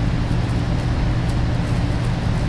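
A steady low hum over an even background noise, without impacts or changes.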